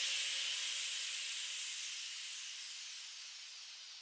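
The closing tail of an electro house track: a wash of hiss-like noise with no beat or bass, fading out slowly and evenly.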